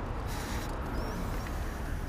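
Steady rush of wind and tyre noise from a Juiced CrossCurrent electric bike rolling over asphalt.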